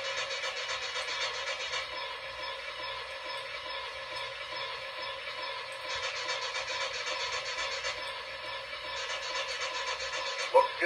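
Protosound 3 sound system of an MTH Premier Empire State Express O-gauge steam locomotive model standing at idle: steady hissing through the model's small speaker over a low hum, the hiss turning brighter for stretches of a couple of seconds.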